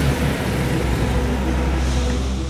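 Deep, steady rumble with an even wash of hiss over it: a produced sound effect laid over the edit, in the manner of a vehicle engine.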